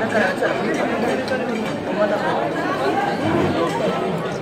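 Crowd chatter: many people talking at once at tables in a large dining hall, a steady babble of overlapping voices with no single voice standing out.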